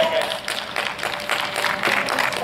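Scattered clapping from a small group of onlookers, with a brief voice near the start.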